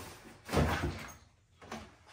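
A soft fabric bag handled and set down onto an armchair: one short rustling thump about half a second in, then quiet.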